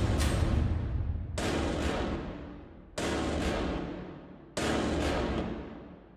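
Movie-trailer score built on huge percussive hits: a deep boom with a bright crash about every second and a half, each one dying away before the next.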